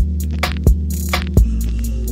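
Hip-hop beat without vocals: a held, deep 808-style bass under a kick drum about every 0.7 s, with a sharp snare- or clap-like hit between the kicks.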